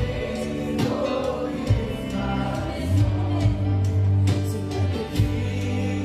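Live worship band playing, with acoustic and electric guitars and keyboard under voices singing, and a steady beat of drum hits.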